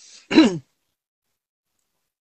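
A man's short breath, then one brief vocal sound that falls sharply in pitch, a throat-clearing noise or grunt between sentences.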